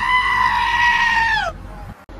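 A goat screaming: one long, loud call of about a second and a half that rises at the start and drops away at the end.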